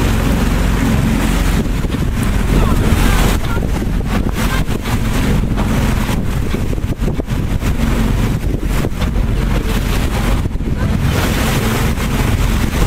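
Wind buffeting the microphone aboard a moving boat, in uneven gusts, over a steady low engine drone and water rushing along the hull.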